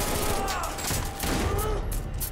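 Gunfire in a TV action scene: many shots in quick succession, with faint speech underneath.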